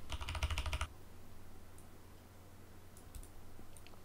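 Computer keyboard typing: a quick run of keystrokes for just under a second, then a few faint single key or mouse clicks.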